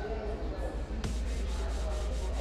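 Steady low rumble under the faint murmur of people talking in a hall, with a single sharp click about a second in.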